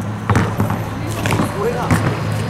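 A basketball bouncing on an asphalt court, a few separate dribbles, with voices in the background.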